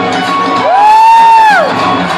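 Recorded music playing in a club hall, with one loud whoop from the audience starting about half a second in: a single long call that rises, holds and falls away, lasting about a second.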